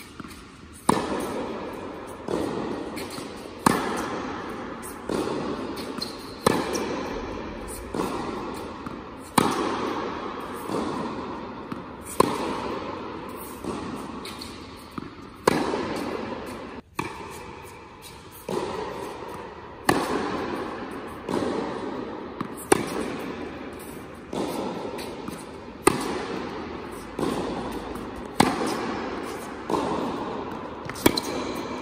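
Tennis ball struck by a racket in repeated forehand strokes, a sharp hit about every one and a half seconds. Each hit echoes on in the large indoor tennis hall.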